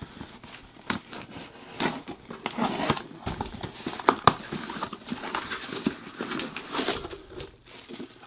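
A cardboard shipping box being cut open: a pocket knife slitting the packing tape, the flaps pulled back, and rustling and crinkling of the packing, with a few sharp clicks. Near the end the clear plastic wrap around the boxed figure crinkles as it is lifted out.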